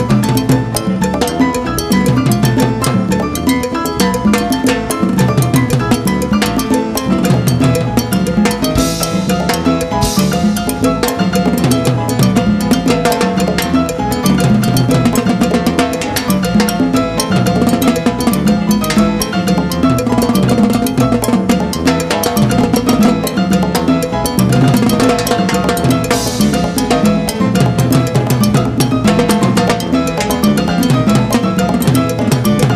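Live salsa timbal solo: fast stick strokes on timbales and drums, with a couple of cymbal crashes, over the salsa band playing underneath.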